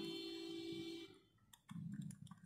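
A steady held musical tone that stops about a second in, then several light clicks of a soldering iron and wires being handled near the end.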